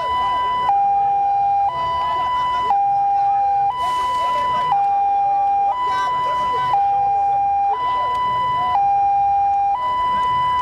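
A police vehicle's two-tone hi-lo siren, loud and steady, switching between a higher and a lower note about once a second.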